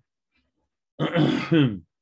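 A man clearing his throat: one loud voiced rasp in two quick pushes, about a second in.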